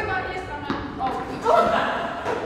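Voices talking in a large, echoing indoor hall, with a single sharp knock about two-thirds of a second in.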